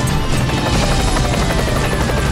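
Dramatic TV-show intro music with a helicopter rotor sound effect over a steady low rumble, and a siren-like tone gliding slowly downward.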